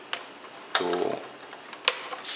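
Two sharp plastic clicks, one at the start and one near the end, as a screwdriver is pried into the seam of a Roomba's plastic faceplate to release its clips. A short voiced 'uh' comes in between.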